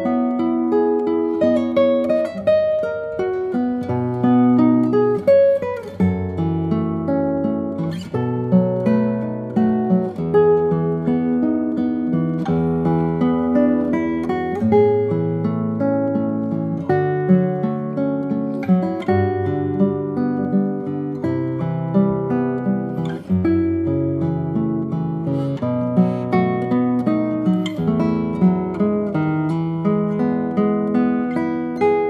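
Nylon-strung handmade classical guitar played fingerstyle: a continuous solo piece of plucked melody notes over bass notes and occasional chords.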